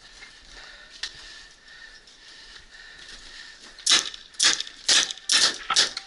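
Paintball marker firing a quick string of about six sharp pops in the last two seconds.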